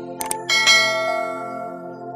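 A subscribe-button sound effect over background music: a quick double mouse click, then a bright bell ding about half a second in that rings and fades, the notification-bell chime.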